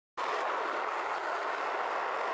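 Skateboard wheels rolling on pavement: a steady rolling noise that starts just after the opening moment.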